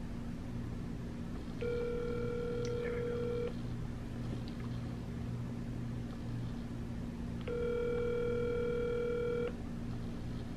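Telephone ringback tone heard through a phone's speaker: two rings, each about two seconds long with about four seconds between. The called line is ringing and has not yet been answered.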